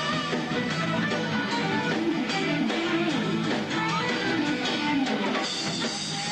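Live band music: an electric guitar plays a lead line over bass and drums, with a few notes bent up and down near the middle.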